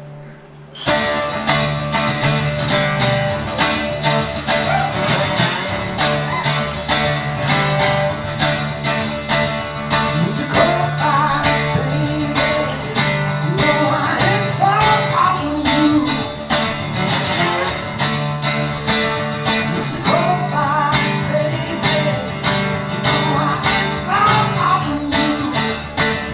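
Solo metal-bodied resonator guitar played hard in a driving picked rhythm. It comes in loud about a second in after a brief quiet moment, and a man's singing voice joins it from about ten seconds in.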